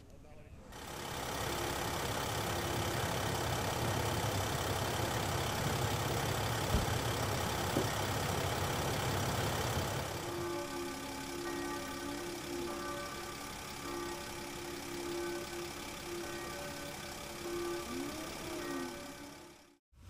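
A vehicle engine idling steadily at a roadside accident scene. For the first ten seconds it has a strong low rumble; after that it is quieter, with a steady hum of a few tones.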